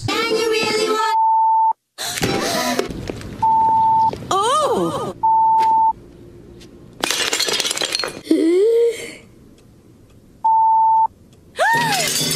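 TV censor bleep sounding four times, a steady high beep of about two-thirds of a second each, blanking out a swear word between snatches of cartoon character voices. A loud crash comes about seven seconds in.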